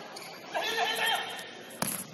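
A player's drawn-out shout rings out about half a second in. Near the end comes a single sharp knock of a futsal ball being kicked on the court.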